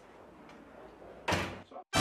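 A faint background hush, then about halfway through a single sudden thud that dies away within half a second, followed by a smaller knock.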